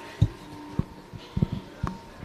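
Footsteps on a hard floor picked up by the room's microphones: a run of dull, low thumps about two a second, over a faint steady hum.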